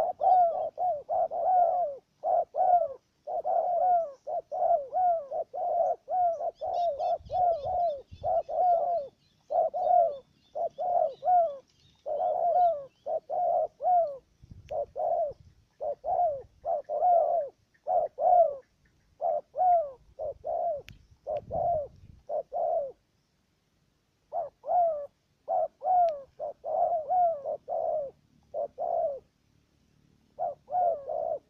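Spotted doves cooing close by: a fast, almost unbroken run of short, downward-sliding coos, about two or three a second, with one pause of about a second and a half about three-quarters of the way through.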